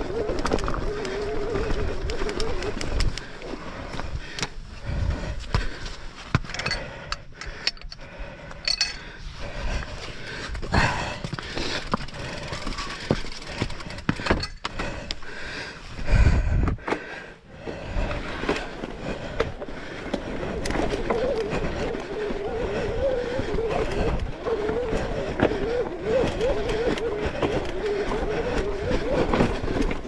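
Mountain bike rolling over a rough, wet trail, with constant rattles and knocks from the bike and a few heavier low thumps. A wavering buzz comes and goes over the top.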